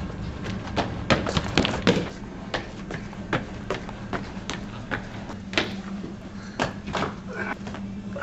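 Footsteps and irregular thumps and taps on a hard tiled school floor as a person walks, then runs. The knocks are loudest and closest together in the first two seconds, over a steady low hum.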